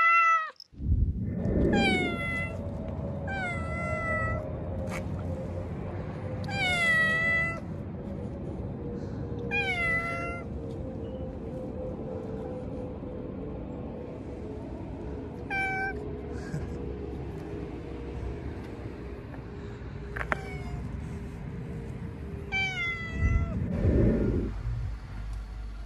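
Domestic cat meowing repeatedly: about eight separate meows that fall in pitch, closer together in the first few seconds and farther apart later. A steady low rumble runs underneath.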